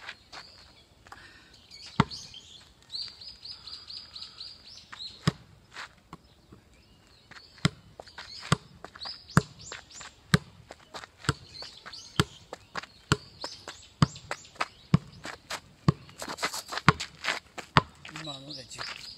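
A football being kicked up repeatedly with the outside of the left foot: a few single touches early on, then a steady run of sharp kicks about two a second from about halfway. Birds chirp in the background.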